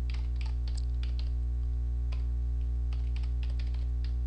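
Typing on a computer keyboard: a run of irregular keystroke clicks, over a steady low electrical hum.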